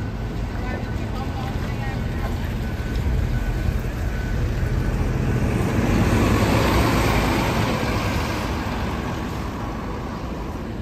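Volvo B7TL double-decker bus, with its six-cylinder diesel and ZF automatic gearbox, pulling away and driving past. The engine and tyre noise builds to a peak as it passes, about six seconds in, then fades.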